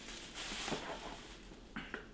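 Faint handling noise of sneakers being lifted and turned in a cardboard shoebox: light rustling, with a short, sharp click near the end.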